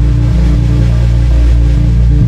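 Live blues band playing an instrumental, heavy bass notes moving in a riff under electric guitar.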